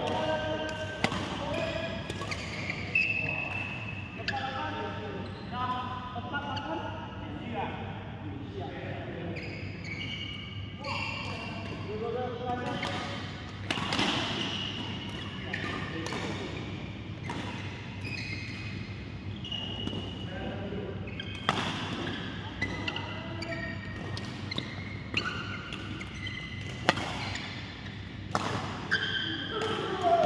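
Badminton play in a large indoor hall: sharp, irregular cracks of rackets hitting shuttlecocks, with people talking in the background and the echo of the hall.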